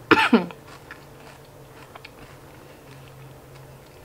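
A short throat sound at the very start, then faint, scattered soft clicks of a mouth chewing a piece of chocolate with the lips closed.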